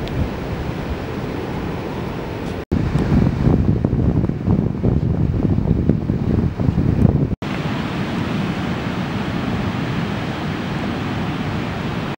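Wind buffeting the microphone over the steady rush of sea surf on a beach. The sound comes in three stretches cut apart by short drop-outs, and the middle stretch is louder and gustier.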